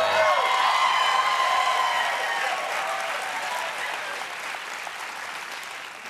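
Studio audience applauding, loudest at the start and slowly dying away.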